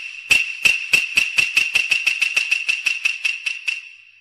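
A high, ringing metallic tone struck over and over, about twenty quick strikes that come faster and fainter until they die away.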